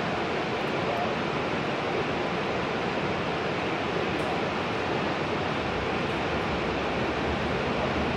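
A steady, even rushing noise with no distinct events; a low rumble comes in during the last couple of seconds.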